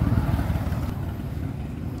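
A motor running with a low, rapid rumble, loudest in the first half second and then easing slightly.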